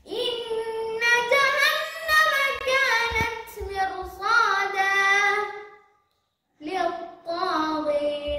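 A boy reciting the Quran in melodic, chanted tajweed style, one long phrase with ornamented, wavering pitch that stops about six seconds in, followed after a short silence by the next phrase.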